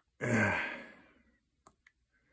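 A person sighs: one long breathy exhale, loudest at the start, falling in pitch and fading away within about a second. It is followed near the end by two light taps on a tablet's on-screen keyboard.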